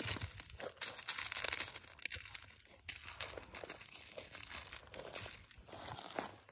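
Crumbled fruit-tree fertilizer spikes poured from a plastic tub onto dry leaves and soil: a quiet, irregular rustling and crackling as the lumps and powder land.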